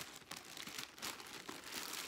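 Plastic packaging crinkling and rustling as it is handled, in quick irregular crackles.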